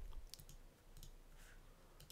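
A few faint computer-mouse clicks, mostly in the first second, over near silence.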